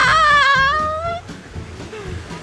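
A woman's long, high, wavering cry at the cold of standing barefoot in snow, breaking off about a second in.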